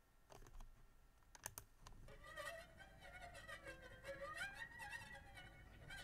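A few clicks, then from about two seconds in a faint recording of a knitting needle rubbed lightly up and down along a harp string: a thin, wavering whine that the harpist calls the 'mosquito' sound.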